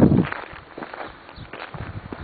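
Footsteps of a person walking on a dirt and gravel road, a series of irregular steps, after a short low thump at the start.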